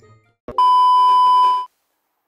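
A single loud, steady 1 kHz bleep tone lasting about a second, a beep dubbed in during editing, starting just after a short click.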